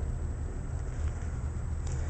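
Low steady background rumble with no distinct events: room noise.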